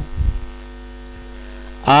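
Steady electrical mains hum, a stack of even tones, in a gap between stretches of a man's speech. The speech ends just after the start and resumes near the end.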